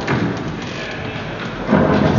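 Knocks and thuds of performers moving on a stage floor, with a louder thud near the end as a seated actor gets up from her chair.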